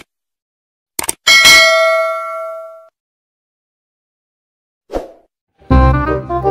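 Subscribe-button animation sound effect: a quick mouse-click, then a bright bell ding that rings out and fades over about a second and a half. Music starts just before the end.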